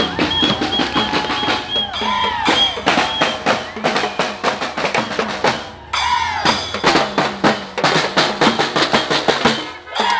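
Marchers' hand-held drums beaten in a fast, dense rhythm, with voices shouting along and a repeated high, short piping tone in the first few seconds. The drumming drops out briefly just before six seconds in, then comes back.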